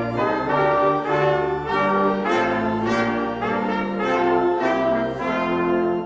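Brass ensemble playing a steady, measured chordal piece, with a new chord sounding about every two-thirds of a second.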